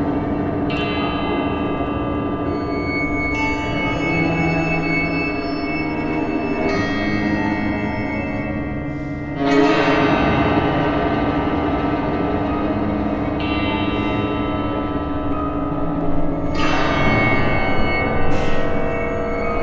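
Instrumental ensemble music with strings: sustained chords that change every three or four seconds, with ringing, bell-like high tones, growing louder about nine and a half seconds in.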